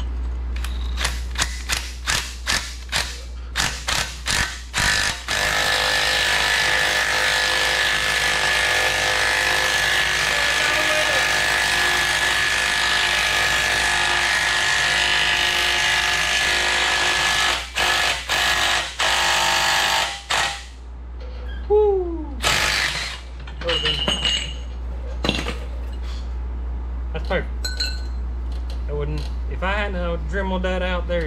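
Cordless impact wrench hammering on the threaded rod of a bushing press, pressing a tight control arm bushing into the axle housing's bracket. It starts in short bursts, then runs steadily for about twelve seconds, then gives a few more short bursts and stops about twenty seconds in.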